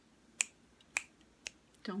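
Three sharp finger snaps about half a second apart.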